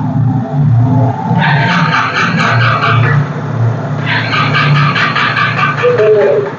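Honda CB300-series single-cylinder motorcycle engine running at idle, blipped up into two louder spells of revving, about a second and a half in and again about four seconds in.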